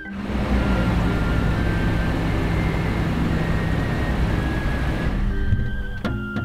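An SUV driving in at low speed: a steady rush of engine and tyre noise that fades away near the end. Background music plays along with it.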